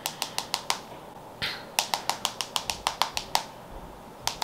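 Long acrylic nails tapping on a smartphone's glass screen: a quick run of clicks, a brief soft rustle, then a longer run of about a dozen clicks, several a second.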